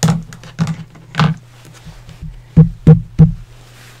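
Taps and knocks of things being handled and set down on a craft table, a few scattered early on and three loud ones in quick succession about two and a half seconds in. A steady low hum runs underneath.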